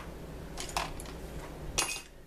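A few light clicks and clinks of small makeup items being handled, three short sharp ones in two seconds.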